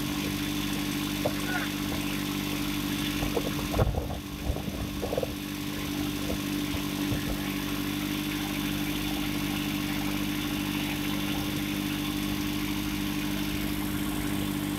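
VST Mitsubishi 22 hp compact tractor's diesel engine running at a steady speed while pulling a seed drill across a field. About four seconds in there is a brief cluster of knocks and a short dip in level.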